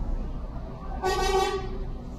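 A single short horn honk lasting about half a second, about a second in, over a steady low background hum.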